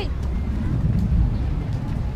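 Low rumble of wind buffeting a handheld phone's microphone, swelling about a second in, with faint voices underneath.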